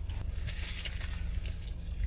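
Chewing and small mouth and handling noises of people eating chicken, over a steady low hum inside a car cabin.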